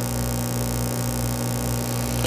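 Steady low electrical mains hum, an even buzz of several fixed tones that does not change.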